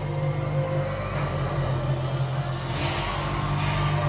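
Low, steady electronic drone from the arena's sound system, the music building up live, with an audience cheering and screaming over it. A burst of screams comes about three seconds in.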